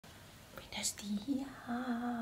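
A woman's soft, whispery voice making a few short murmured sounds, then a low held hum near the end.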